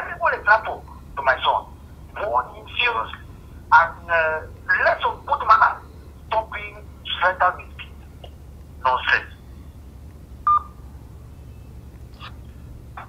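Speech coming through a mobile phone on speakerphone for about nine seconds, then a short beep about ten and a half seconds in, over a low steady hum.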